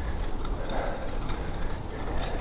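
Steady rumble of wind on the microphone and road noise from a single-speed bicycle being ridden along a street.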